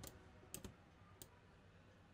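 Near silence with a few faint computer mouse clicks: a pair about half a second in and another just after a second.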